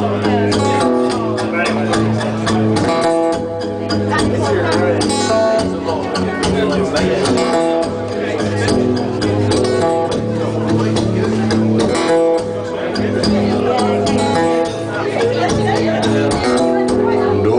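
Steel-string acoustic guitar strummed and picked in a steady rhythm, an instrumental passage with no singing.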